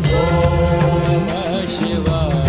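Male Hindustani classical voice singing a Sanskrit devotional hymn to Shiva, holding a long note that wavers in an ornament near the end, over steady accompaniment.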